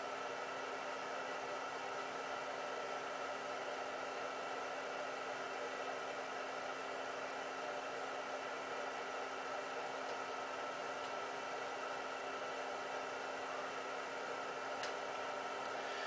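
Steady hiss with a faint steady hum, even throughout; a faint click near the end.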